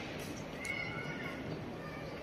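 Steady outdoor background noise with a faint, short high-pitched call just under a second in.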